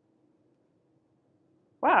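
Near silence with faint room tone, then a woman says "Wow" just before the end.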